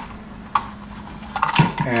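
Blue plastic electrical box clicking and rattling against the drywall and wire as stiff 12-gauge cable is worked through a tab slot in its back: a few scattered sharp clicks over a faint steady hum.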